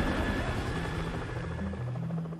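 Helicopter in flight, its rotor chopping steadily over a low sustained hum.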